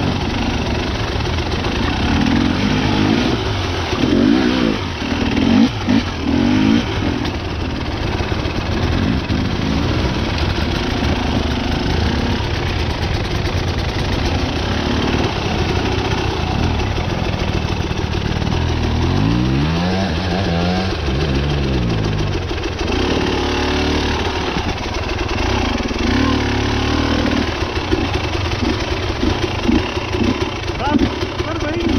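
Enduro dirt bike engine revving unevenly at low speed, the throttle blipped on and off as the bike climbs over rocks in a creek bed, with one clear rev rising and falling near the middle.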